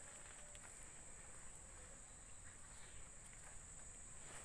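Near silence: faint forest ambience with a steady high-pitched hiss and a few faint ticks and rustles.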